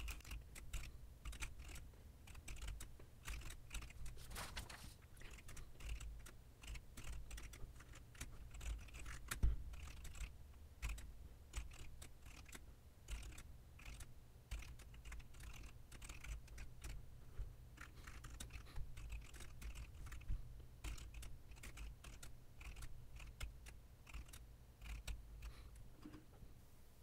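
Typing on a computer keyboard: quick, irregular runs of keystrokes with short pauses.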